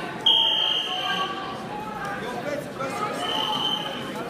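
Wrestling scoreboard buzzer sounding twice: a loud steady buzz of about a second just after the start and a shorter one near the end, over voices from the crowd and coaches. It marks the end of the period.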